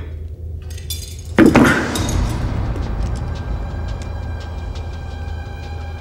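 Film soundtrack: a steady low hum, then a sudden loud crash about a second and a half in that rings out into a sustained dark musical drone.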